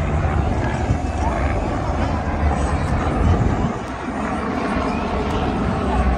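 Crowd chatter over the low rumble of a helicopter flying overhead.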